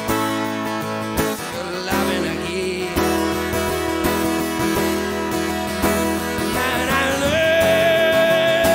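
Solo acoustic guitar strummed through an instrumental passage between sung lines, recorded from the soundboard. A long held note comes in near the end.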